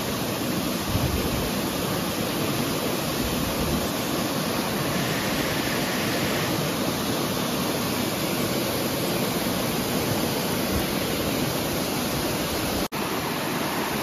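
Rain-swollen rocky cascade rushing and splashing into a pool: a steady, even rush of water, broken for an instant near the end.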